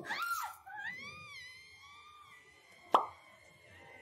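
A cartoon girl's long, high-pitched scream as she falls. The pitch rises at first, then holds and fades. A single sharp pop cuts in about three seconds in, after a brief exclamation at the very start.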